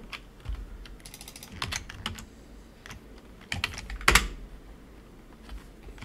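Typing on a computer keyboard: scattered keystrokes, with one louder click about four seconds in.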